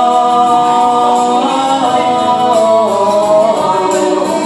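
Male vocalist singing a long, wordless held note through a microphone and PA, the pitch stepping down in a slow run in the second half, over quieter backing music.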